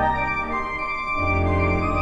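Organ playing sustained chords of a two-five-one progression in B flat (C minor, F7, B flat) on a full registration, with a deep bass; the chord changes about a second in.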